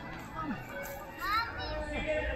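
Children's voices at play, with a high rising shout or squeal from a child about a second and a half in.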